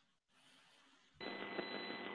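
Near silence, then about a second in a phone line's background noise comes on, hissy and band-limited, with a faint steady high whine: a dial-in caller's telephone line opening up on the conference call.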